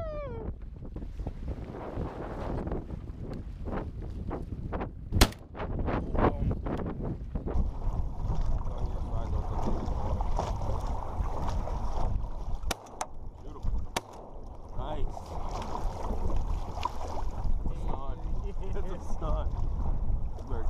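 Wind on the microphone and choppy sea water slapping and rushing along the hull of a small layout boat, with several sharp knocks against the boat, the loudest about five seconds in. From about eight seconds in the rushing grows steadier and fuller.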